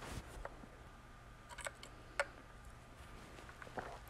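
Quiet room with a brief soft rustle at the start and a few faint, sharp clicks scattered through.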